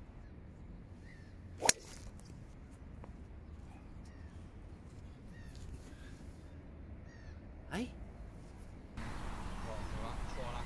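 Ping G410 driver striking a golf ball: one sharp, loud crack of impact about two seconds in. A quieter swish ending in a click follows near the end, with faint bird chirps throughout.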